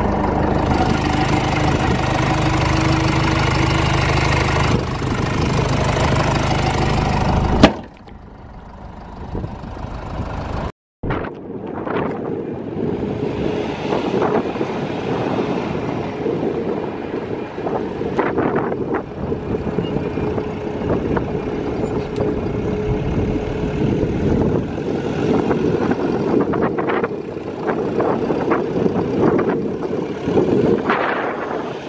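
Mercedes-Benz Sprinter 315 CDI's 1950 cc four-cylinder diesel running steadily, cut off by a sharp click about eight seconds in. After a short break, the van's diesel is heard from outside as it drives slowly across the yard, with scattered knocks and clicks.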